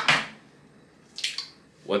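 A hen's egg being cracked and broken open over a bowl: a short crackle of shell about a second in, as the egg drops in.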